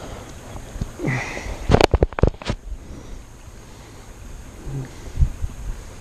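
Handling noise as a small fish is taken out of a landing net: a short sniff, then a quick run of five or six sharp knocks and clicks about two seconds in, and a single light tap near the end.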